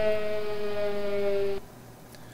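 PicoScope's siren alarm sounding after a mask failure, signalling that a waveform fault has been caught: a steady siren tone with many overtones, its pitch sagging slightly, that cuts off about one and a half seconds in.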